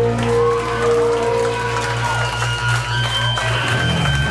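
Hardcore punk band playing live through amplifiers: electric guitar and bass notes held and ringing, with the notes changing about three and a half seconds in.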